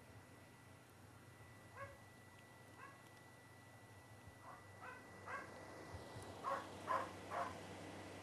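Faint animal calls: a series of about eight short, pitched cries, sparse at first, then closer together and louder over the last two seconds.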